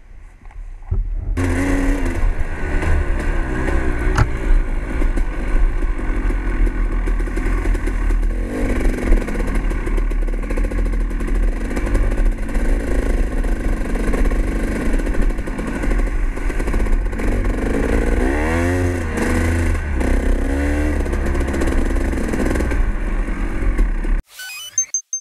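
Dirt bike engine, quiet for about a second, then pulling away and running hard along the trail, its revs rising and falling several times near the end as the rider works the throttle and gears.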